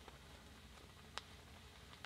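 Near silence: faint room tone, with one small click about a second in.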